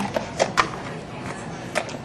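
A few light knocks and clicks of kitchen handling at a food processor just loaded with cauliflower: about four sharp taps, the loudest just over half a second in.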